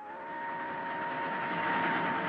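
Steam locomotive running: a steady rushing hiss that swells slightly, with a held steady tone over it.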